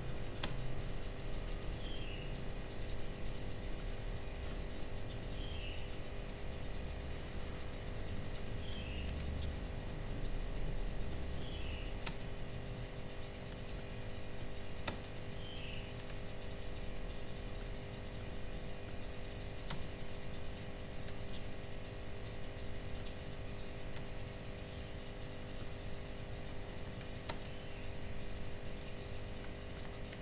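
Quiet room with a steady electrical hum, and sparse, irregular clicks from a computer mouse being worked.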